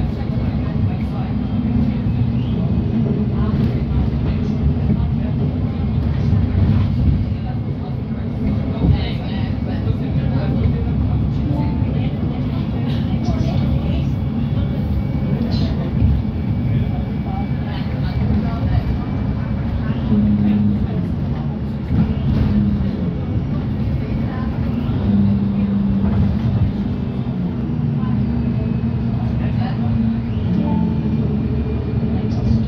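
Inside an Alexander Dennis Enviro200 MMC single-deck bus on the move: the diesel engine drones steadily, with scattered rattles and knocks from the cabin fittings. The engine note lifts briefly twice in the second half.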